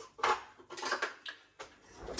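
Handling noise of a plate being moved in a kitchen: a few short scrapes and knocks, the first the loudest.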